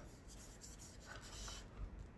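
A fine watercolour brush stroking over paper, faint.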